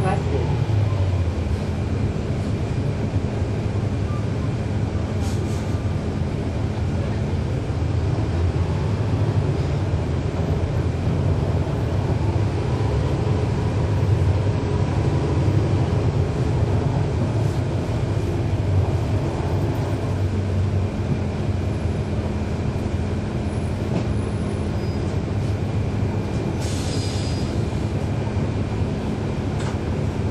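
Cummins ISL9 inline-six diesel engine of a NABI 40-SFW transit bus running steadily: a low rumble with a steady hum that fades about six seconds in and returns about twenty seconds in. The ZF Ecolife six-speed automatic transmission is virtually silent. A brief hiss comes near the end.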